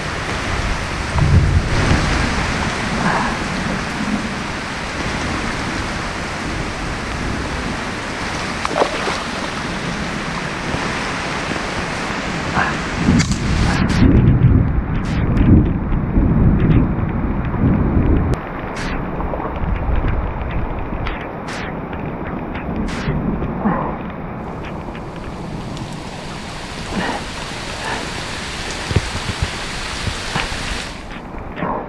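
Steady rain falling on a muddy wallow and on the microphone, with heavy low rumbling thumps about a couple of seconds in and again for several seconds around the middle.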